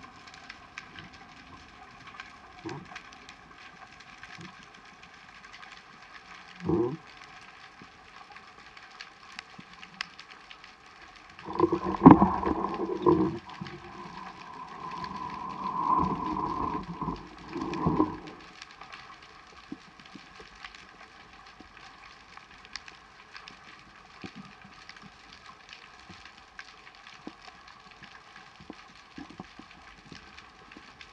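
Muffled underwater sound through a waterproof camera housing: a steady faint hiss with scattered small clicks. A short thud comes about seven seconds in, and a louder muffled sound with a few held tones lasts from about a third of the way in for several seconds.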